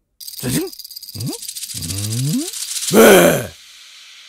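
A person's drawn-out groans, four of them, each rising in pitch, ending in a loud cry about three seconds in. Under them a rattling, buzzing noise builds to its loudest at the same moment, then cuts off.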